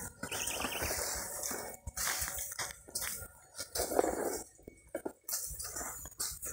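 Outdoor backyard ambience: an irregular hiss-like noise that comes and goes, with a brief wavering high call, like a bird or insect trill, about a quarter second in.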